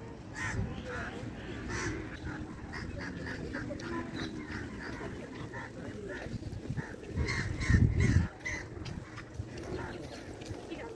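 Outdoor ambience of birds calling in short repeated calls, with distant voices underneath, and a loud low rumble lasting about a second near the end.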